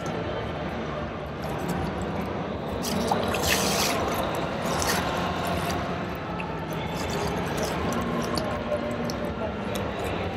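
Water splashing and sloshing in a demonstration pool as a person in a drysuit wades and moves a kayak paddle fitted with an inflated paddle float, with a brief louder splash about three and a half seconds in. Underneath is a steady background of exhibition-hall noise and distant voices.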